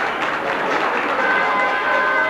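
Audience applauding, with background music whose held notes come in a little past the middle.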